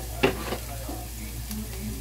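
Food frying in oil in a nonstick skillet on an electric coil burner, sizzling steadily over a low hum, with a sharp knock about a quarter second in and a few lighter clicks.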